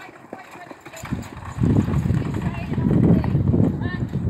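Hoofbeats of a carriage-driving horse team, growing loud about a second and a half in.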